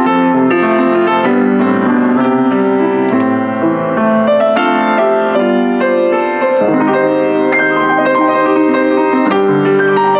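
A used Rogers upright piano, built around 1975, played with full chords and a melody. Its top lid is propped open, which lets more of the harmonics out for a slightly brighter sound and slightly more volume.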